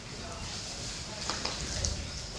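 Classroom room sound while students copy a problem: faint background voices with a few small clicks and scrapes, over a low steady hum.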